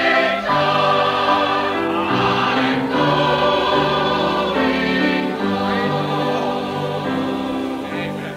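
Slow gospel singing in harmony, the voices holding long notes that move from chord to chord, from an old live recording with a dull, cut-off top end.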